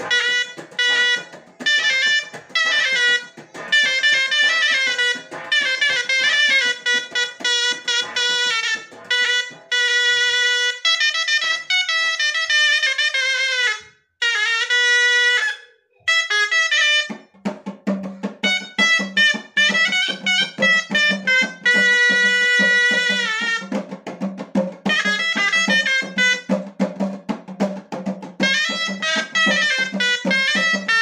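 Moroccan ghaita (double-reed shawm) playing a fast, ornamented chaabi-style melody, loud and piercing, with brief breaks in the middle. A steady low tone joins underneath from just past halfway.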